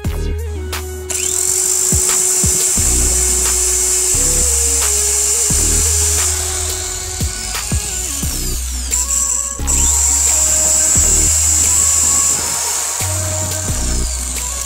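Background music with a steady beat. Over it, a small electric drill with an abrasive cutting disc in its chuck runs with a high-pitched hissing whine that starts about a second in, stops for a few seconds past the middle, then runs again.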